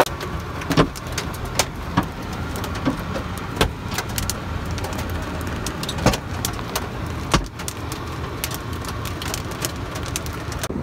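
Hailstones striking the car's body and cracked windshield, heard from inside the cabin: irregular sharp knocks, several per second, a few of them much harder than the rest, over the car's steady low rumble.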